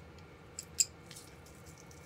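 A single sharp click just under a second in, among a few faint light ticks.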